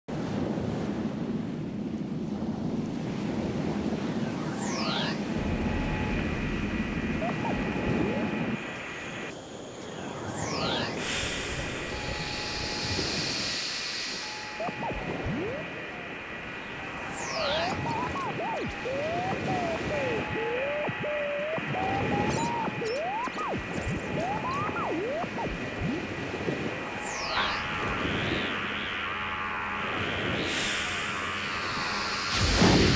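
Electronic sound-effect soundscape: a low rumble for the first eight seconds under a steady high hum, with falling whistle sweeps about every six seconds. From about halfway in, wavering, sliding tones like whale calls join in.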